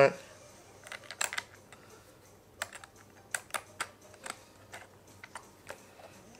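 Light, irregular clicks and taps as a plastic bike cleat and its bolts are handled and hand-turned into the sole of a cycling shoe.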